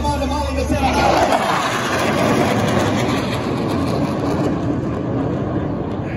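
Two jet aircraft flying low overhead: a loud jet roar swells about a second in, then slowly fades as they pass.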